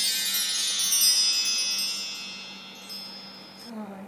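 Magical sparkle chime sound effect: a shimmering cluster of many high, bell-like tones that rings out and slowly fades over about three seconds.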